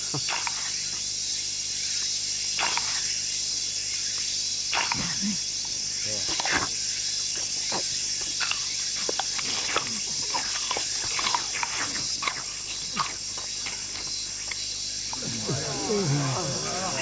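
A steady, high insect drone, with scattered short wordless grunts and sighs from soldiers suffering in the heat.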